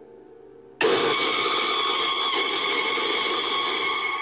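Horror jump-scare: a faint eerie drone, then about a second in a sudden loud, harsh scream that holds steady for over three seconds before cutting off.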